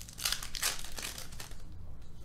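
Foil wrappers of Panini trading-card packs crinkling and tearing as hands open a pack and handle the cards, in a run of rough crackles.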